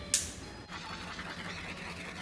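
A clothes iron being handled at an ironing board: a sharp click just after the start, then a steady hiss for about two seconds.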